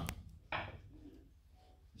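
A pause in the drumming: quiet room tone with a sharp click just after the start and one short, soft sound about half a second in.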